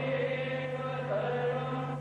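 Devotional chanting sung to a slow, wavering melody over a steady held drone.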